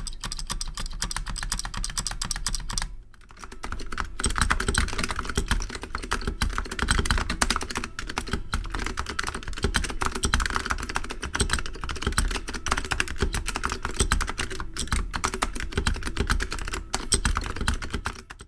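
Fast typing on Fujitsu tactile magnetic reed keyswitches (a Fujitsu N860 keyboard), a dense run of keystrokes with a very bassy sound. There is a brief pause about three seconds in.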